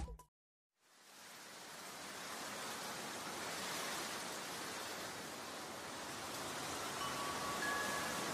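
A brief silence, then a steady rushing hiss that fades in over a couple of seconds and holds; faint steady tones come in near the end.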